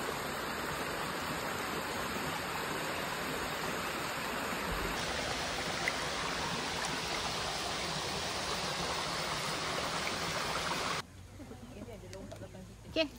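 Small rocky forest stream, water running steadily over the stones in an even rush, cutting off about a second before the end.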